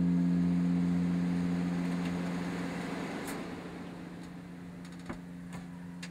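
A car rolling slowly along a concrete driveway and coming to a stop: tyre and engine noise swell and then fade over a steady low hum. A couple of small clicks follow near the end.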